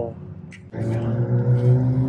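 A vehicle engine running at a steady pitch, starting abruptly about three-quarters of a second in.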